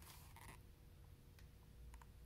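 Near silence: room tone with a faint steady hum and a few soft clicks.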